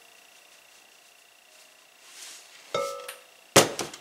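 Kitchen handling sounds: a quiet stretch, then a ringing clink and a sharp, loud knock near the end as a glass measuring cup and a plastic sugar canister are handled.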